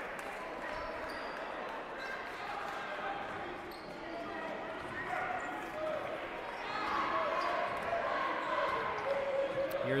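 Basketball gym ambience: a crowd's voices murmuring and calling out in a large hall, with a basketball being dribbled on the hardwood court.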